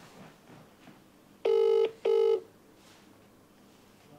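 Telephone ringback tone on an outgoing call that is still connecting: one British-style double ring, two short steady tones in quick succession about a second and a half in.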